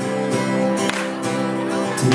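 Acoustic guitar strummed live through a PA, with held chords ringing between a couple of strokes.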